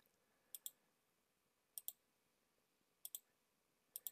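Computer mouse button clicking: four pairs of short, sharp clicks, one pair a little over every second, with a quiet room in between.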